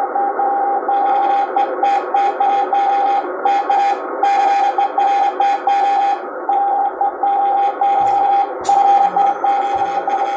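Morse code (CW) signal heard through a President transceiver's speaker: a steady beeping tone keyed in dots and dashes, with short pauses between characters, over a bed of band hiss. A few low thumps come near the end.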